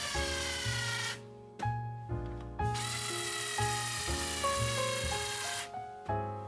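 Cordless electric screwdriver driving speaker mounting screws into the box. Its motor whines in short runs, the pitch dropping slightly during each: about a second, a pause, a short burst, another pause, then a longer run of about three seconds that stops near the end.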